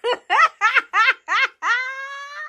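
A person laughing in a high voice: six quick rising 'ha's, then a longer drawn-out one near the end.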